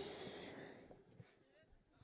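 The last hit of a live band's song ringing out: a high cymbal wash that dies away over about the first second. Then near silence with a few faint, distant voices.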